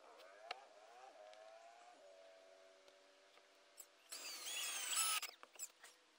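Cordless drill driving screws into treated pine roof planks. The motor whirs up in pitch, then runs steadily. About four seconds in comes a louder, higher-pitched whine lasting about a second.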